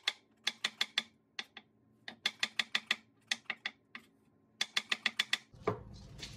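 Chef's knife slicing shiitake mushrooms on a bamboo cutting board: quick runs of sharp taps as the blade strikes the board, about six a second, with short pauses between the runs.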